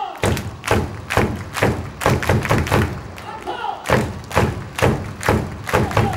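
Rhythmic cheering beat of heavy thumps, about two a second, with voices between the beats.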